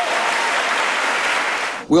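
An audience applauding, an even, steady clapping that cuts off abruptly near the end.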